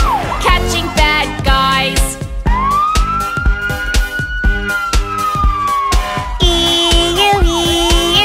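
Children's song backing music with a steady beat, overlaid with a cartoon siren sound effect: one long wail that rises and then slowly falls through the middle, then a two-tone hi-lo siren, "E-ooo E-ooo", starting near the end.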